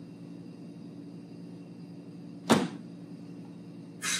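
Quiet gym room tone with a steady low hum, and one brief burst of noise about two and a half seconds in.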